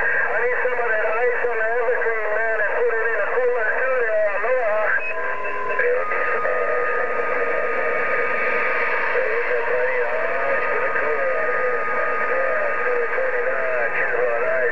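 A voice coming in over a President HR2510 transceiver tuned to 27.085 MHz. It sounds thin and narrow, and the words can't be made out. A steady whistle joins about six seconds in.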